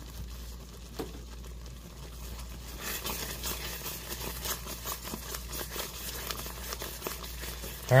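Wooden spoon stirring a thick cream sauce in a pan on the stove: irregular soft scraping and swishing strokes, which grow busier from about three seconds in.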